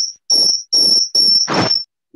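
Loud, high-pitched insect-like chirps, one steady tone each, repeating about two to three times a second and stopping just before the end.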